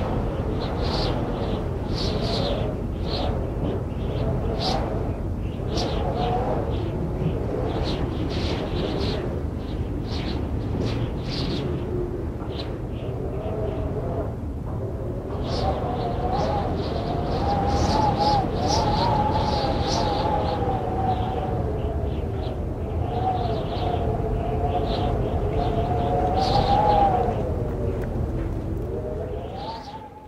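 Background music with a sung vocal line, its melody held in long notes over a steady low bass.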